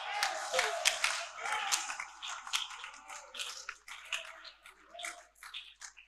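Scattered hand claps from a congregation with faint voices underneath, thinning out over a few seconds.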